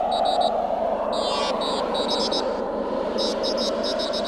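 A steady rushing noise with short, repeated bursts of high electronic bleeping over it.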